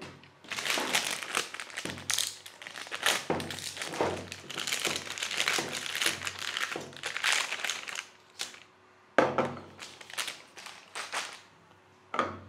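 Plastic anti-static bags crinkling as 3.5-inch hard drives are unwrapped by hand, with a sharp knock about nine seconds in.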